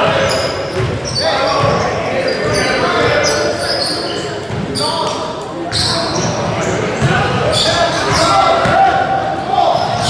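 Sounds of an indoor basketball game on a hardwood court: a basketball bouncing, short high sneaker squeaks and spectators' voices chattering, in the echo of a large gym.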